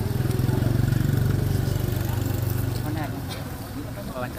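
A small motor vehicle's engine running close by, swelling to its loudest about a second in and fading away by about three seconds, as it would when passing. Faint voices are underneath.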